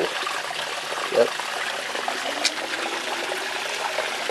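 Shallow creek water trickling steadily over gravel. A short voice sound comes about a second in.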